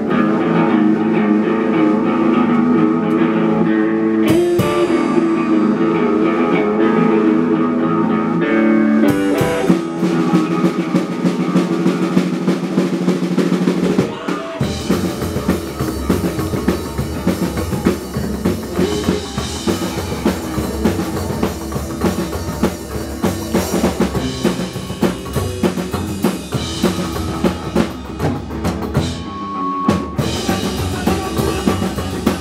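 A live psychobilly trio plays an instrumental stretch on guitar, upright double bass and drum kit. For the first several seconds sustained guitar chords ring. Drum hits come in about nine seconds in, and about fourteen seconds in the full band settles into a steady beat with the bass.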